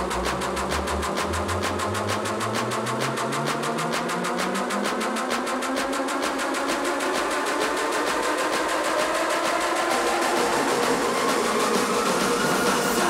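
Electronic dance music build-up with no bass or kick drum: a synth tone rises steadily in pitch under a rapid, even roll of hits.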